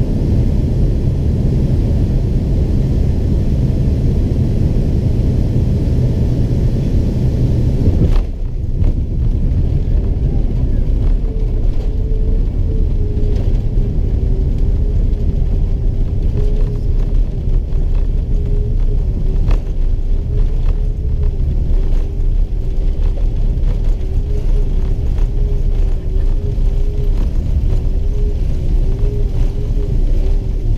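Cabin noise of a Boeing 767-300ER landing, heard at a window over the wing: a loud, steady rumble of engines and airflow. About eight seconds in the hissing top of the sound drops away suddenly, leaving a deeper rumble as the jet rolls along the runway with spoilers raised, with a faint wavering hum over it.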